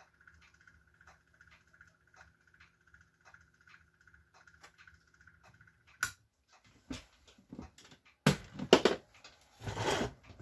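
The color wheel's small electric motor running with a faint steady hum and a light tick about three times a second. It cuts off with a sharp click about six seconds in. Knocks and rattles follow as the metal lamp housing is handled, loudest near the end.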